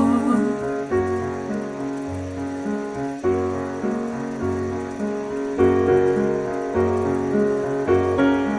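Piano accompaniment playing slow, held chords that change every second or two, after a sung note trails off at the very start.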